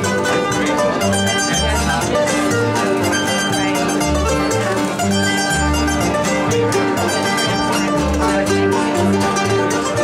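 Old-time string band playing an instrumental breakdown on banjo, mandolin, acoustic guitar and plucked upright bass, the bass stepping through low notes about twice a second under the busy picking.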